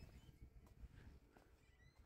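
Near silence: faint outdoor background with a few soft ticks in the first second.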